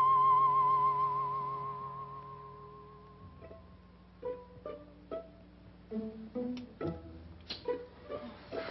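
Film score music: a single high, wavering tone with heavy vibrato, held and slowly fading, then from about three seconds in a run of short plucked string notes.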